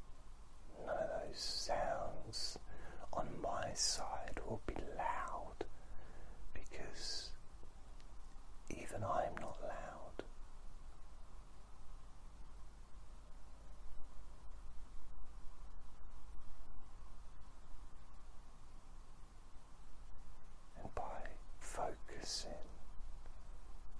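A man whispering softly in short phrases during the first ten seconds and again near the end, with a long pause between, over a steady low hum.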